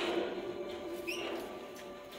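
A short, rising high squeak about a second in, over a steady hum of held tones.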